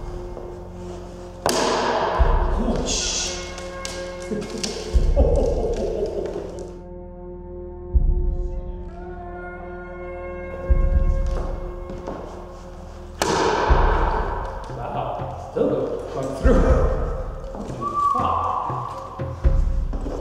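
Sword blows cutting into the edge of a plywood round shield: a series of heavy thuds about every three seconds, with background music throughout.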